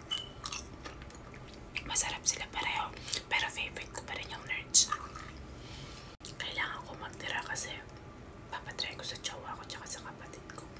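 Close-miked crunching and chewing of freeze-dried candy: irregular crisp crackles and wet mouth sounds in uneven clusters, with a sudden brief dropout about six seconds in.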